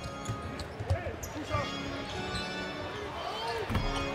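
Game sound from a basketball court: a ball bouncing on the hardwood, with faint voices. Quiet music with held notes comes in after about a second and a half.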